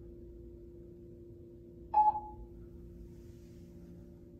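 A single electronic chime from a ThyssenKrupp hydraulic elevator's tone signal as the car comes down to floor 1. It is one sharp ding about two seconds in that fades within half a second, over a steady low hum from the car.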